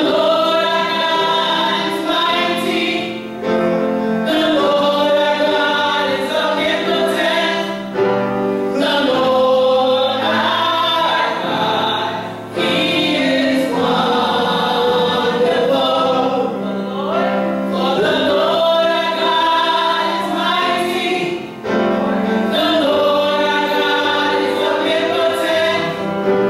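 A small group of voices, women and a boy, singing a gospel song together in harmony, phrase after phrase with short breaths between.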